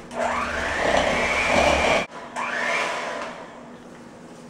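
Handheld electric mixer beating sugar and partly melted butter in a bowl, creaming them together. It runs loudly for about two seconds with a faint rising whine, cuts off suddenly, then runs again more quietly and fades away.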